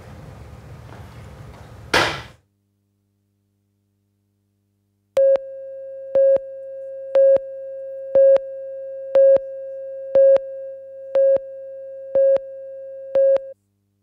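Broadcast tape countdown-clock tone: a steady mid-pitched tone with a louder beep each second, nine beeps, starting about five seconds in and cutting off shortly before the picture goes to black.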